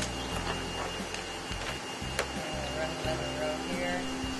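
Industrial zigzag sewing machine stitching polyester webbing onto a sail in short runs, starting and stopping a few times, with one sharp click about halfway through. Behind it runs the steady hum of a cutting plotter's vacuum.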